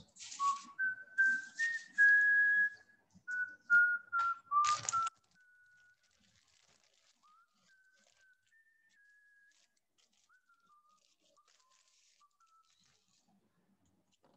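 A person whistling a tune in a series of clear held notes. It is loud for the first few seconds, with some breathy hiss on the early notes, then carries on much fainter before dying away near the end.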